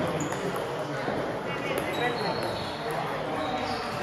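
Table tennis balls clicking on tables and bats, against a steady murmur of voices from a busy table tennis hall.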